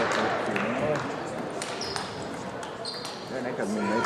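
Table tennis balls clicking off tables and bats, irregular sharp taps from play in a sports hall, over background chatter. Two short high squeaks come about two and three seconds in.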